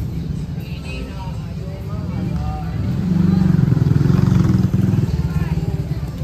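A motor vehicle engine running close by, a steady low pulsing rumble that grows louder for about two seconds in the middle and then eases off, with faint voices in the background.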